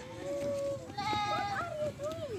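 A goat bleating: a wavering, quavering call that starts about a second in and lasts most of a second.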